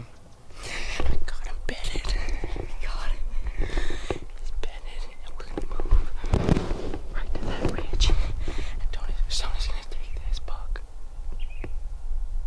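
Hushed whispering between people, breathy and unvoiced, over a steady low rumble on the microphone.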